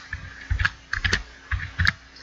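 Computer keyboard being typed on: about half a dozen keystrokes in small irregular clusters, as a short name is keyed in.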